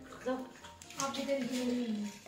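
A person's voice: a short sound just after the start, then one drawn-out word through the second second. Underneath, puppies eat from a steel bowl.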